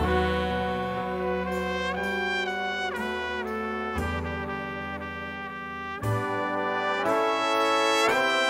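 A jazz big band's brass section playing held chords that move every second or so over a bass line.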